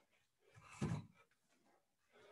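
A single short, muffled thump about a second in, heavy in the low end.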